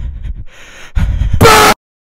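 Low rumbling game noise with a few thuds, then a short, very loud, distorted horn-like blast near the end that cuts off suddenly into silence.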